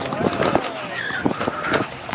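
JMK free skates rolling over a painted outdoor court, with a run of sharp clicks and knocks from the wheels and platforms and a few short squeaks.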